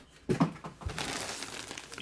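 Clear plastic bag around a jersey crinkling and rustling as it is handled and lifted, with a sharp rustle about a quarter second in and a steady crackle through the second half.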